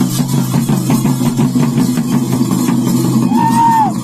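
Ritual music: fast, steady drumming on hand-played barrel drums over a steady low drone. Near the end a higher pitched note swells up and falls away.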